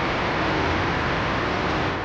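Steady, even background noise with no distinct events: a constant hiss and low rumble.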